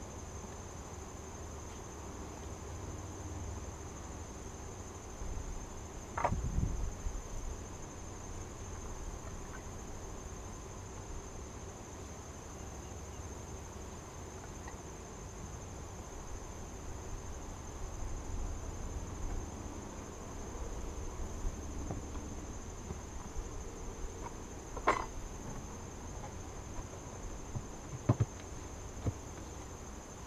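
Steady high-pitched trill of crickets with a faint hum of honeybees around an open beehive. A few knocks of wooden hive parts being handled and set down, the loudest about six seconds in and about twenty-five seconds in.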